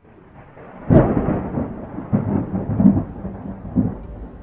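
A thunderclap about a second in, followed by rolling thunder that swells again several times.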